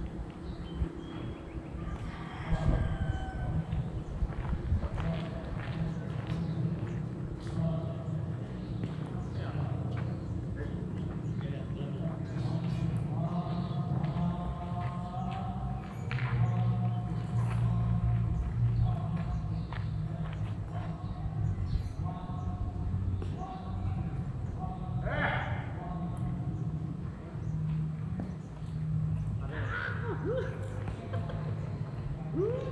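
People talking at a distance over a steady low rumble, with a few sharp knocks scattered through.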